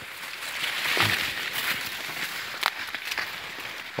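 Maize leaves rustling and brushing against the person and the camera while walking through rows of tall corn, a steady hiss with a few sharp crackles and footsteps.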